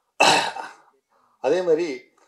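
A man clears his throat once into a podium microphone, a short rough burst, and starts speaking again about a second later.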